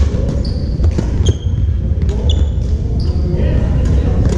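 Sneakers squeaking on a hardwood gym floor, several short high squeaks, among a few sharp taps. Under it runs a steady low rumble with distant voices in a large echoing hall.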